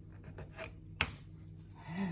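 Faint rubbing and light clicks of handling, with one sharp click about a second in.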